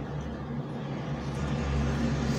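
A car's engine running steadily, heard from inside the cabin as a low hum that grows slightly louder near the end.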